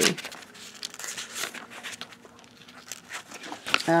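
Pages of a paper bridge score pad being flipped through by hand: a run of light, quick paper flicks and rustles.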